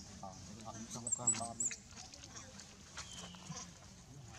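Indistinct voices, with a brief louder burst holding a few short high squeaks about a second in.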